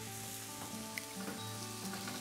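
Bison burger patties sizzling on a stovetop grill pan, under soft background music with long held notes. A faint tick about a second in.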